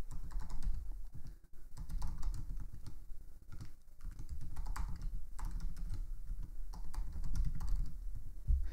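Typing on a computer keyboard: a run of quick, irregular key clicks with a couple of short pauses, as an email address is typed in.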